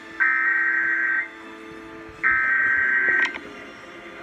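Emergency Alert System SAME header tones played from a computer: two harsh, warbling data bursts of about a second each, a second apart. They are the digital header that opens an emergency alert, here a severe thunderstorm warning.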